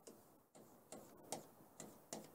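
Near silence with a few faint, short ticks about two a second.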